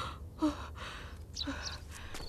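A frightened young boy's breathy gasps, two short intakes of breath about a second apart.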